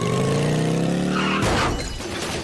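Cartoon motorcycle engine revving, its pitch rising steadily, cut off about a second and a half in by a sudden burst of noise.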